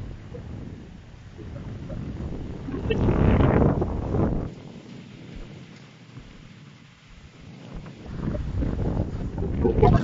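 Wind buffeting a phone's microphone: a low rumble that swells in two gusts, about three seconds in and again near the end.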